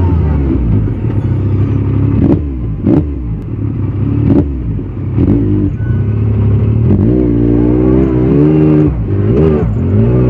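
Yamaha YXZ1000R's three-cylinder engine working hard on a steep rocky hill climb, its revs rising and falling repeatedly as the throttle is worked. Several sharp knocks come through in the first half as the machine goes over rough ground.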